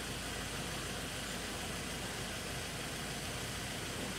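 Steady faint background hum with no distinct sounds in it, the ambient noise of an outdoor interview during a pause in speech.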